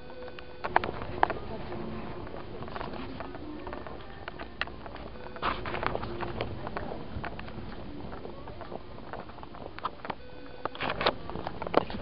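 Department-store ambience while walking: scattered footsteps and handling clicks on a hard floor, with distant voices and faint background music.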